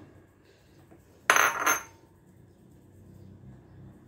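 One short, ringing clink about a second and a quarter in, from a glass measuring bowl knocking against a stainless-steel mesh sieve as flour is tipped in for sifting.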